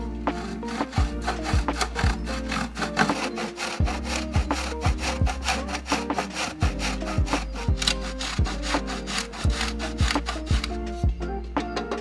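A block of Parmesan rubbed up and down a stainless steel box grater in quick, repeated scraping strokes that stop near the end, over background music with a steady beat.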